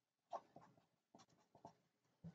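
Felt-tip marker writing on paper: a few faint, short strokes, the first about a third of a second in being the loudest.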